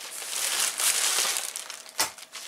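Shiny synthetic fabric and plastic wrapping rustling and crinkling as the green screen kit's black carry case is handled. A steady scratchy crinkle that swells early and thins out toward the end.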